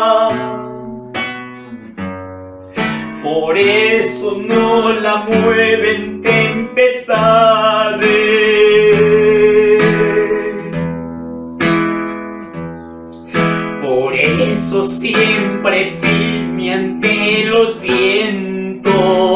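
A man singing a Spanish-language Pentecostal chorus while strumming an acoustic guitar, with short stretches of guitar alone between the sung lines.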